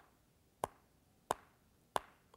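Upper and lower teeth tapped together in the qigong teeth-tapping exercise: three sharp, short clicks at an even pace, about one every two-thirds of a second.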